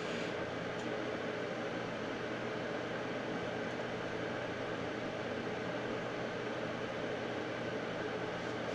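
Steady background hiss with a faint low hum, unchanging throughout: room tone with no other event.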